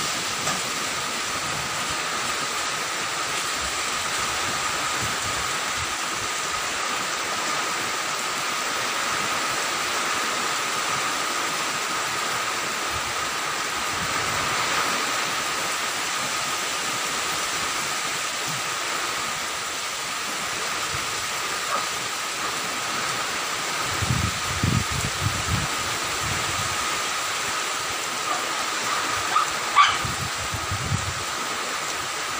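Strong storm wind and heavy rain: a steady, even rushing noise with a thin steady tone running through it. Late on, gusts buffet the microphone in a cluster of low thumps.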